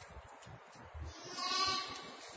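A ewe lamb bleating once, a single short call about one and a half seconds in.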